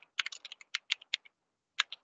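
Typing on a computer keyboard: a quick run of keystroke clicks, a pause of about half a second, then one more keystroke near the end.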